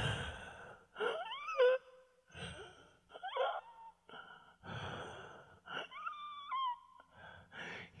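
A man gasping and wheezing for breath in about seven short, strained pulls, some rising into squeaky choked whimpers. He is acting out being strangled by a rope noose around his neck.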